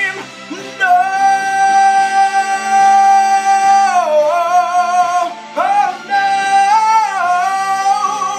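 A male singer holding long high wordless notes: one held for about three seconds that slides down, then a second held note near the end, over instrumental backing.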